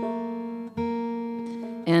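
Acoustic guitar sounding one note twice, about three-quarters of a second apart, each left ringing and slowly fading, as a string is tuned at the peg.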